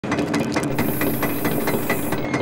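Aerosol spray-paint can rattling with fast, even clicks, about eight a second, with a spray hiss joining in under a second in as paint is sprayed.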